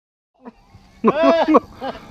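Silence, then a man laughing out loud about a second in, with a short second burst of laughter just before the end.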